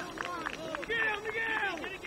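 Several voices shouting and calling out over one another, many of them high-pitched young voices, with no clear words.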